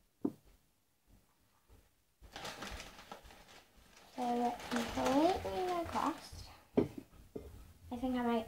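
A girl's wordless vocalizing, sliding up and down in pitch, starting about four seconds in, after a stretch of rustling. A sharp knock follows near the end.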